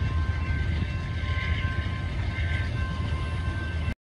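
Low, steady rumble of a passenger train going away past a grade crossing, with a faint steady high tone coming and going above it.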